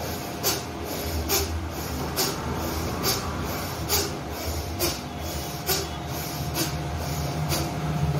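Bhastrika pranayama (bellows breath): a man breathing in and out forcefully and fast through the nose, each breath a sharp rush of air, in an even rhythm of a little more than one breath a second.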